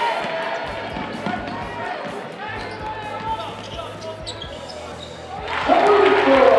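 A basketball being dribbled on a hardwood gym floor, with voices in the hall. Near the end, louder voices come in suddenly.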